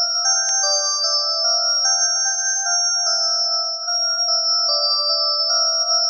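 Electronic music: a synthesizer melody of steady, pure tones stepping from note to note, with no drums or bass. A single sharp click about half a second in.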